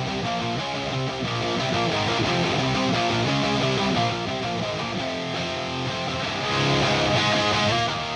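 A hard rock mix playing back, led by heavily distorted electric rhythm guitars. A parallel distortion return of the guitars, overdriven mic preamps, is being blended in on two console faders, and the mix gets a little louder about six and a half seconds in.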